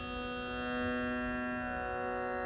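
A steady drone of several sustained tones rich in overtones: the tanpura-type drone that sets the pitch for Carnatic singing. It swells slightly in the middle.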